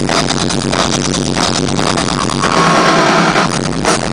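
Live heavy metal drum kit solo, loud, with dense rapid hits on drums and cymbals.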